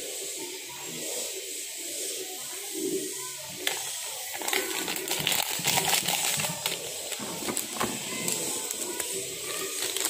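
A plastic instant-coffee sachet crinkling and rustling in the hands as its powder is poured into a glass. The crackling grows busier after about four seconds, over a steady hiss.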